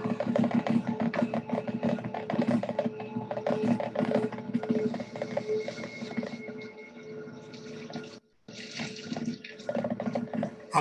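Ambient meditation music with a flowing, trickling water sound and a soft held tone that pulses slowly on and off. It breaks off for a moment about eight seconds in.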